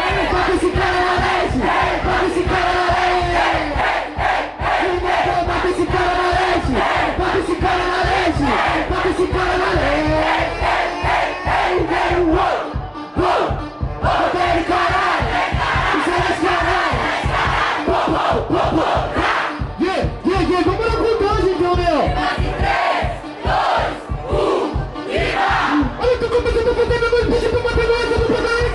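A large crowd shouting and chanting together, loud and continuous, with music faintly underneath.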